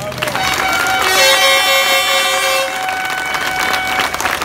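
A crowd cheering while several horns are blown at once, holding steady notes at different pitches that stop near the end.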